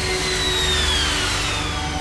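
Jet airliner engine blast: a steady rushing roar with a low hum under it and a high whine that falls steadily in pitch.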